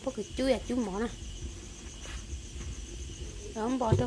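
Insects chirping steadily, an even, high-pitched pulsing trill that runs on under people talking.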